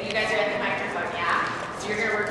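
Young girls' voices talking over one another in a large room.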